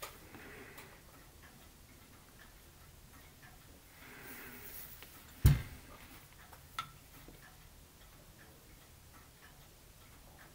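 Quiet handling noises on a wooden workbench while wood glue is worked into peg holes: faint scattered ticks and taps, one sharp knock about five and a half seconds in, and a lighter click just over a second later.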